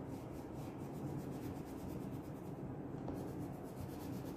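Green wax crayon rubbed back and forth on drawing paper as a circle is shaded in: a steady, soft scratching.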